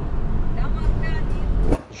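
Steady low rumble of a car's engine and tyres, heard from inside the cabin while driving along a city street; it cuts off abruptly near the end.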